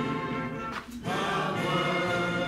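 A recorded national anthem played over loudspeakers: orchestra with singing voices, with a short break in the sound just before a second in.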